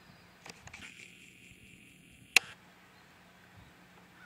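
Quiet outdoor background with a few faint ticks, a faint high-pitched steady sound lasting about a second and a half, and one sharp click a little past halfway.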